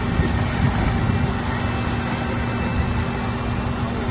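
Diesel engines of an asphalt paver and the dump truck feeding it, running steadily: a constant low drone with a steady humming tone.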